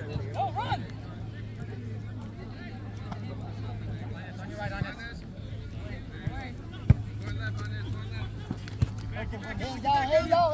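Players' distant shouts and calls on a grass soccer pitch over a steady low hum, with a few sharp thuds of a soccer ball being kicked, the loudest about seven seconds in.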